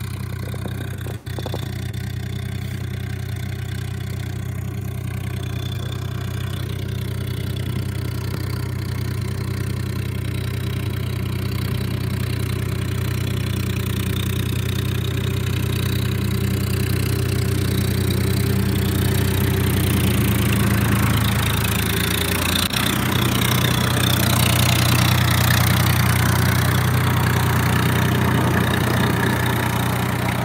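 Swaraj 963 FE tractor's 60 hp diesel engine running steadily while working a field with a rotavator, growing gradually louder as it comes close. A rushing noise builds over the engine note in the last third as the tractor passes right by.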